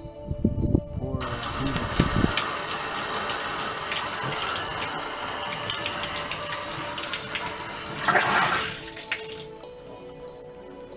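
Bathtub faucet running full, water rushing into the tub, starting about a second in and shut off near the end, with a brief louder surge just before it stops. The tap is run to clear the pipes after a new water heater has been put in.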